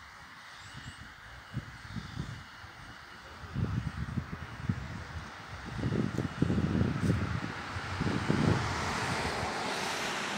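Wind buffeting the microphone in irregular low gusts, stronger in the second half, over a broad rushing background noise that swells toward the end.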